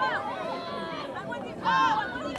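Raised voices of players and spectators shouting and calling out during a women's rugby match, with one louder, high-pitched shout near the end.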